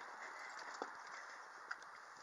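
Faint handling noise: two small clicks over a low steady hiss as a loose plastic car badge is turned in the hands.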